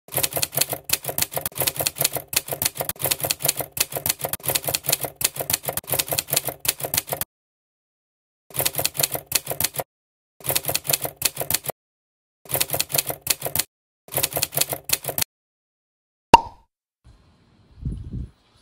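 Keyboard typing sound effect: rapid key clicks in runs, one long run of about seven seconds and then four short runs of about a second each with silent gaps. Near the end comes a single sharp click with a brief ring.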